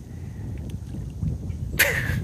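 Wind buffeting the microphone outdoors, a steady low rumble, with a short sharp noisy burst near the end.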